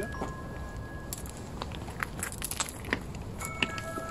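Footsteps on a dry, stony dirt path: a scatter of small clicks and crackles, with faint background music of held tones underneath.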